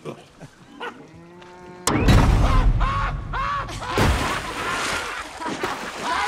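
A big, sudden splash about two seconds in as a man drops into the sea, with a deep rumbling crash that lasts about two seconds.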